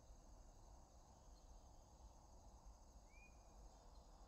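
Near silence: faint outdoor background with a thin steady high hum, and one brief faint chirp a little after three seconds in.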